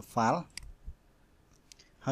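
Computer mouse clicks: one sharp click about half a second in, then two quick clicks close together near the end.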